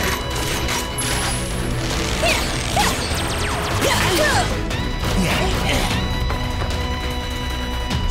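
Cartoon battle sound effects: repeated crashes and impacts with whooshes and mechanical weapon sounds, over a steady bed of action music.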